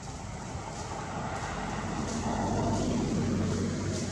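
A motor vehicle passing at a distance: a low engine hum and road noise swell to their loudest about three seconds in, then fade.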